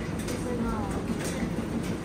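Steady low mechanical rumble and hum of laundromat machines running, with a few faint clicks and a faint voice in the background.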